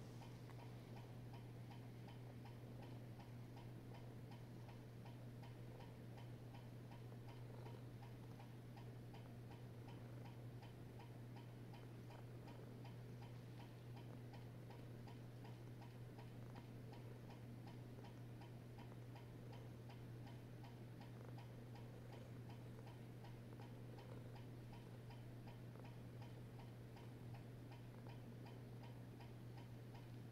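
Faint, regular ticking over a steady low hum.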